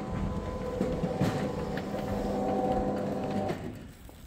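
Remote-controlled electric roller shutter gate opening: its motor runs with a steady hum as the slatted shutter rolls up, then stops near the end as the gate reaches fully open.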